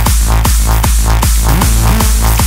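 Hardstyle dance music from a DJ mix: a pitch-dropping kick drum hits about two and a half times a second, around 150 beats a minute, over a sustained deep bass and bright synth layers.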